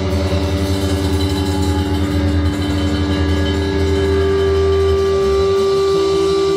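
Live blues band with electric guitar and bass sustaining a long held chord at full volume; the low bass tone drops out about five seconds in.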